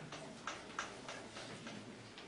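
Faint, quick taps and strokes of writing on a board, about three or four a second.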